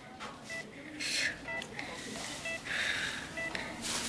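A hospital bedside patient monitor giving short, regular high-pitched beeps. There are two breathy sounds over it: a brief one about a second in and a longer one near three seconds.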